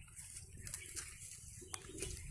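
Faint background noise with a low rumble and a single click near the end.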